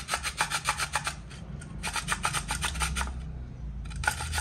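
Raw beetroot being grated on a stainless-steel box grater: quick rasping strokes, about five or six a second, in two runs with a short pause between.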